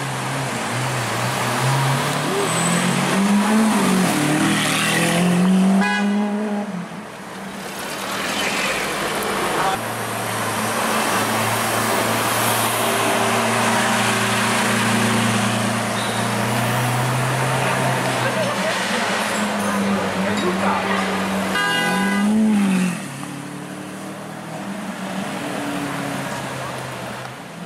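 Lamborghini Aventador SuperVeloce's naturally aspirated 6.5-litre V12 running at low revs in slow traffic, its revs rising and falling briefly about three seconds in and again near the end. People's voices are heard over the engine.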